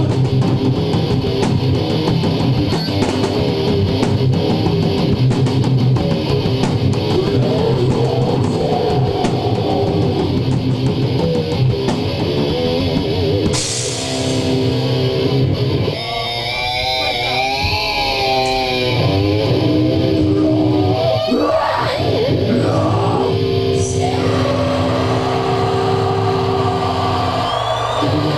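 A live heavy rock band plays with distorted electric guitars and a drum kit. The playing is dense with drum and cymbal hits at first; about halfway through the drumming thins out and long held guitar chords ring.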